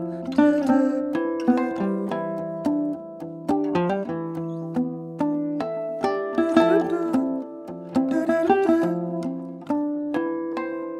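Alto domra picked in a jazz improvisation: quick plucked notes ringing over sustained, layered notes built up with a loop station.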